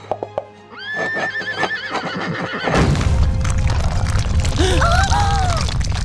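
Cartoon unicorn whinnying, a wavering call about a second in, over background score. Just before the middle a heavy low rumble sets in as the ground cracks open and goes on to the end, with more animal calls over it.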